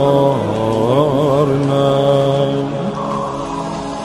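Mugham-style mourning song: a male voice sings a wavering, ornamented line over a steady low drone, then gives way to held, steady notes.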